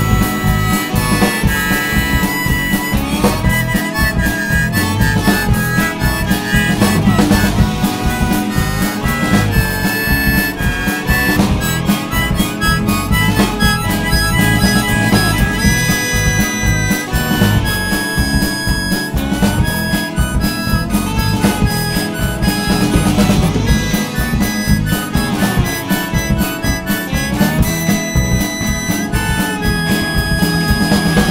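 Harmonica solo over a folk band of acoustic guitar, bass and drums in an instrumental break, the harmonica's melody notes often sliding up into pitch.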